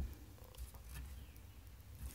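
Faint scratches and light taps of fingers handling a small broken plastic case latch, over a low steady hum.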